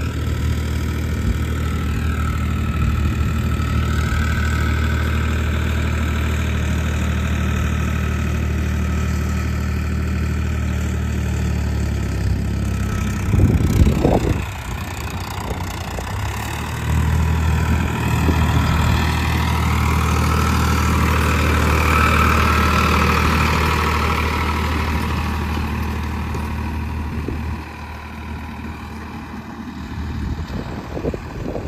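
Farmtrac 60 tractor's diesel engine running steadily. About halfway through there is a brief loud noise, and the engine note drops for a few seconds before picking back up.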